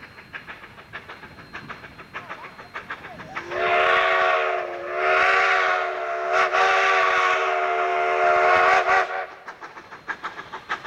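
Steam locomotive whistle blowing as the engine approaches: it sounds about three and a half seconds in, dips briefly a second later, then is held for about four more seconds and cuts off. Before and after it, faint quick regular beats from the approaching train.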